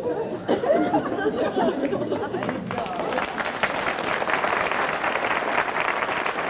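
Studio audience laughing, then breaking into steady applause about two and a half seconds in.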